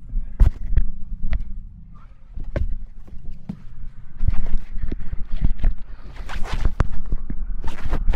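Scattered knocks, clicks and rustling of a person climbing into and settling in a pickup-style cab seat, over a steady low rumble.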